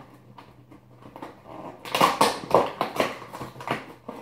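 Cardboard and plastic packaging of an advent calendar being torn open and unwrapped: a quiet start, then a dense run of sharp crackles and rustles from about two seconds in.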